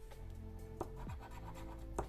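A metal spoon scraping the latex coating off a paper scratch card in short strokes. Quiet background music with steady held notes plays underneath.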